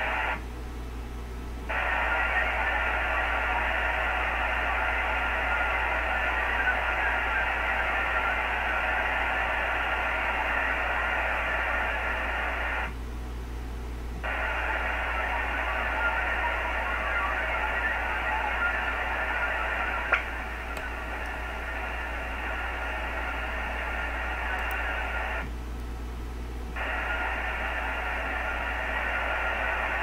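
VARA HF digital data signal heard through an HF radio's speaker: a dense, hiss-like warble filling the voice band. It breaks off three times for about a second, roughly every 12 seconds, as the link turns around for the acknowledgement of each block. A steady low hum runs underneath.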